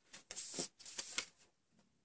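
Rustling and light scraping of hands handling small crystal stud earrings close by, in quick bursts for about a second and a half.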